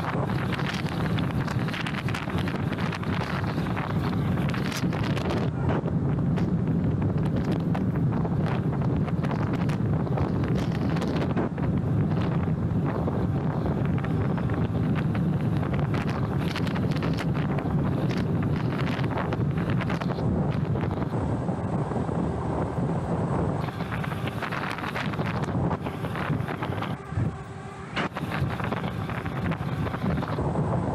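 Wind buffeting the microphone of a camera on a moving e-bike: a steady rushing noise with a low rumble and quick gusts, dropping briefly near the end.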